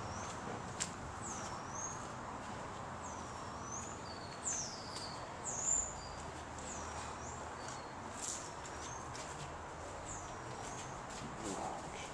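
A small bird calling repeatedly: short, high, slurred chirps every second or two over a steady outdoor background hiss, louder about four to six seconds in.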